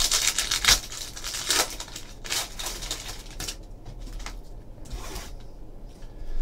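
A foil trading-card pack being torn open and its wrapper crinkled, a run of short crackling rips over the first three seconds or so. Quieter rustling of cards and wrapper follows.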